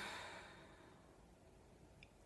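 A woman's long sigh, an exhale that fades away about a second in, then near silence.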